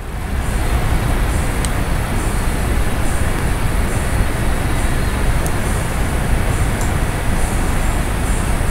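A steady, loud rushing noise with a deep rumble and a few faint high clicks, cutting in suddenly at the start.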